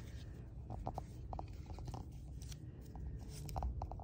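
Faint paper rustling and small scattered clicks from a slip of paper being handled and unfolded.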